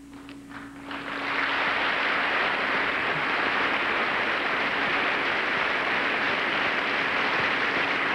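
Banquet audience applauding: a few scattered claps that swell into full, steady applause about a second in.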